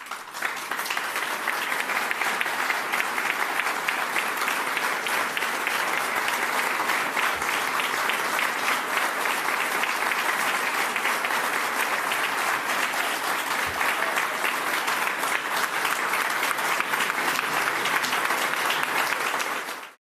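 Audience applauding: the clapping builds in within the first second, holds steady and dense, and cuts off abruptly at the end.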